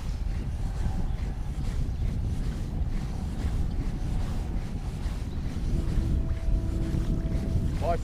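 Wind buffeting the microphone on a small boat out on the water, a steady low rumble. A faint steady hum joins in over the last couple of seconds.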